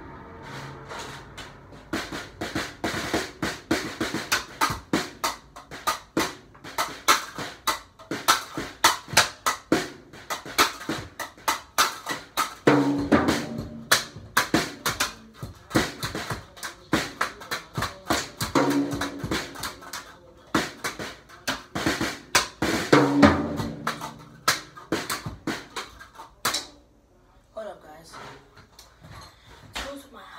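A small drum kit played in fast, uneven beats: snare and tom hits with bass drum, and paper plates mounted on the cymbal stands in place of cymbals. Some hits ring with a low drum tone. The playing stops about 27 seconds in, leaving only soft scattered taps.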